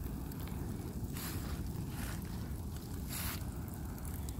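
Open fire burning through the wooden frame of a reclining loveseat: a steady low rumble with scattered small crackles, and two brief bursts of hiss, about a second in and just after three seconds.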